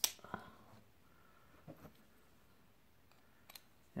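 A few light metal clicks of a Bondhus hex key being drawn from its plastic holder and fitted into a pedal axle. The sharpest click comes right at the start and a second follows at once, with two fainter ones later on.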